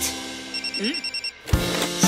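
Cartoon mobile-phone ring: a rapid electronic trill of high beeps lasting under a second, over a fading held music note. The children's song's backing music comes back in with a beat near the end.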